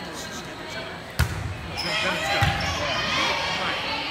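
A volleyball struck with a sharp slap about a second in, then a dull thud of the ball, with players' voices calling out during the rally.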